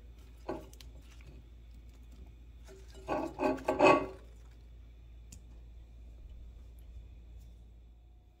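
Hands handling cut corn-cob pieces among spinach leaves in a ceramic bowl, with a short burst of rubbing and rustling a little after three seconds, over a steady low hum.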